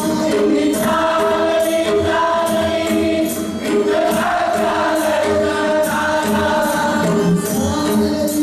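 Congregation singing a Hindu devotional aarti together in long held notes, over a steady beat of jingling percussion strikes about twice a second.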